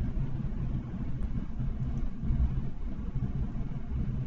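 A deep, steady rumble of background noise on the microphone, with no other distinct sound.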